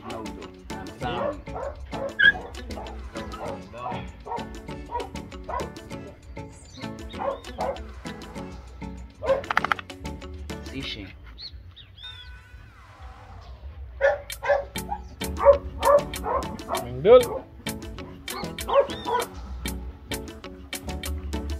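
Seven-week-old pit bull puppies yipping and whimpering over background music with a steady beat; the yips cluster near the middle and in the last few seconds.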